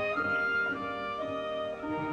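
Classical orchestral music, held notes changing step by step.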